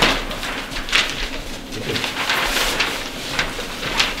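Large paper plan sheets rustling and crinkling as they are handled, in a few brief crackles over a low room hum.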